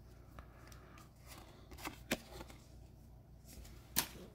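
Faint handling of Pokémon trading cards and foil booster packs: soft rustling with a few light clicks, the sharpest near the end.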